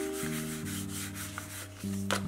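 A hand rubbing and sliding over paper on a journal page: a series of short, dry scrapes. Background music with held notes plays underneath.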